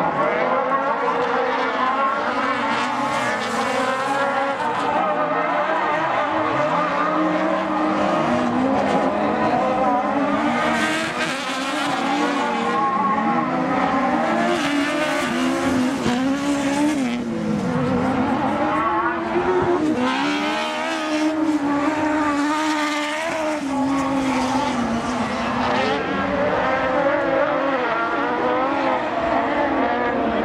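Several autocross buggies racing on a dirt track. Their engines run hard and rise and fall in pitch as the cars accelerate and lift for the corners.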